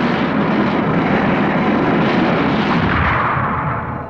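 Cartoon sound effect of a giant robot's descent rockets firing as it sets down: a loud, steady rushing rumble that eases off near the end.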